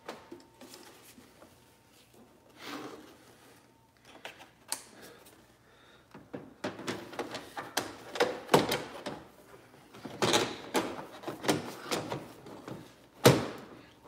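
Plastic tail light unit knocking and clicking against the car body as it is pushed into its recess: a run of quick taps and knocks through the second half, ending in one louder knock as it goes straight in.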